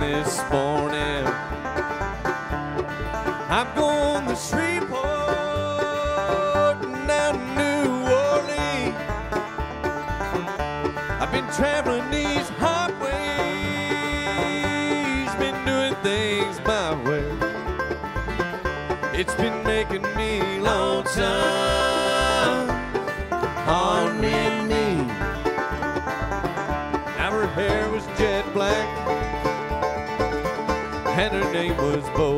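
Live bluegrass band playing an instrumental tune on banjo, acoustic guitar, mandolin, upright bass and fiddle, with no singing.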